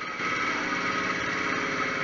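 Ground fountain firework spraying sparks: a steady hiss with a fast, even crackle.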